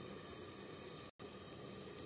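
Steady faint hiss from a covered kadai of fish curry simmering on a gas stove under a steel plate lid, briefly cutting out about a second in.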